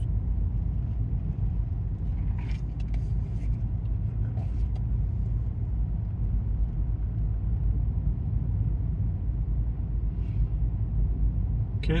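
Steady low road and engine rumble heard inside a car cruising on a paved highway.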